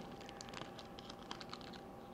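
A small clear plastic zip-lock bag handled between the fingers: faint crinkling with scattered light ticks.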